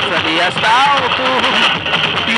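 Voices singing a samba-enredo, their pitch sliding up and down, with a rising glide just under a second in, over a constant noisy din.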